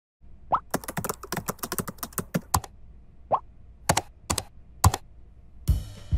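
Computer keyboard typing: a quick run of keystrokes, then a few single key taps. A short rising pop comes about half a second in and again after three seconds.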